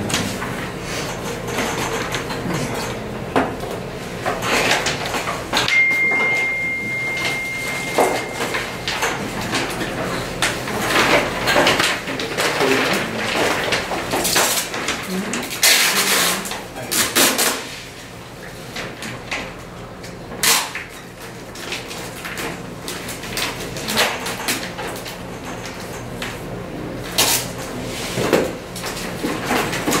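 Papers and envelopes being handled on a meeting table: rustling, shuffling and knocks, with low indistinct talk around the room. About six seconds in, a steady high beep sounds for about three seconds.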